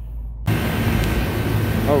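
A low hum, then about half a second in a steady rush of noise from a walk-in freezer's condensing unit running: its compressor and two condenser fans, both fan motors freshly replaced after a failed one caused high-pressure trips.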